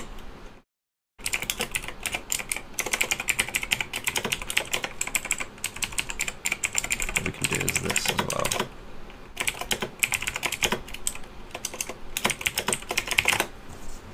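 Rapid typing on a computer keyboard, keystrokes coming in quick runs with short pauses between them.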